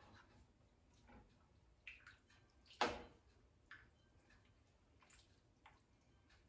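Spoon dipping stew from a pot into a bowl: a few short, faint knocks and drips of liquid, the loudest about three seconds in.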